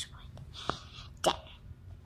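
A storyteller's voice finishes a word, then pauses with faint, brief breathy sounds and a small click over a low background hum.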